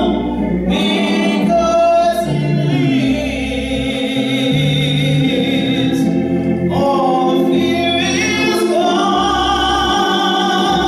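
A woman singing a gospel song solo, holding long notes, over steady low accompaniment.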